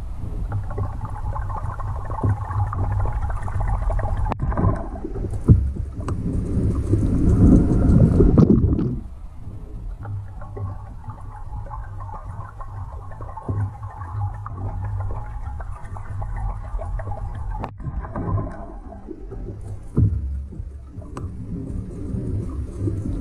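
Underwater sound picked up by a camera in lake water: a steady low rumble of moving water with churning and gurgling, fuller and louder for the first nine seconds and quieter after, broken by a few sharp knocks.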